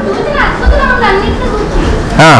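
Speech only: a man's voice speaking into a microphone, softer than the louder phrases around it.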